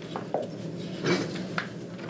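Brief rustling and handling noises from papers being shuffled, loudest about a second in, over a steady low room hum.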